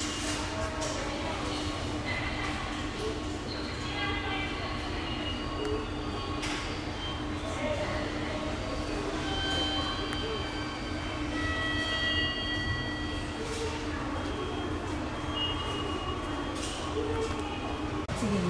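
Steady railway-side rumble with a constant low hum, typical of a train or electrical equipment running at a station. Short high tones come and go over it, with a few brief clicks.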